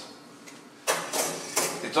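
Stainless wire oven rack being pulled out of a countertop convection oven, scraping and clinking against its rack supports. It starts suddenly about a second in, after a quiet first second.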